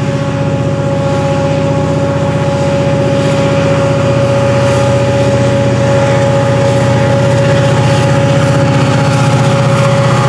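Florida East Coast diesel locomotive 425 passing close and loud, its engine working under load as it pulls a string of ballast hoppers, with a steady high whine over the diesel's rumble.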